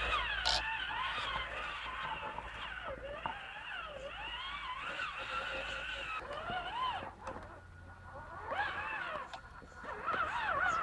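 Electric motor and geared drivetrain of a Traxxas Summit RC truck whining, the pitch rising and falling as the throttle is worked over rough ground. It drops away for a moment about seven seconds in, then picks up again.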